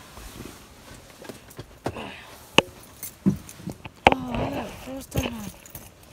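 Handling noise: several sharp clicks and knocks, with short wordless vocal sounds from about four seconds in.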